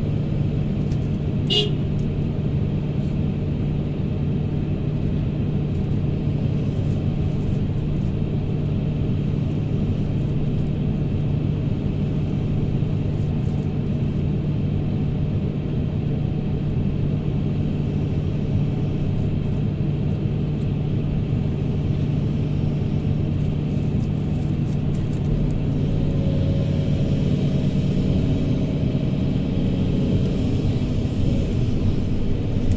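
Hydraulic excavator's diesel engine running steadily with a low, even hum, heard from the operator's cab. A brief high squeak comes just before two seconds in. Near the end the sound grows a little louder as the machine swings round.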